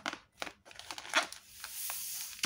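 Clear plastic fish-packing bag filled with water crinkling in a few sharp crackles as hands twist and squeeze it, with a steady rustling hiss in the second half.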